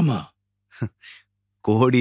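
Recorded speech: a voice trails off, a short sound and a breath follow in a brief pause, and talking starts again near the end.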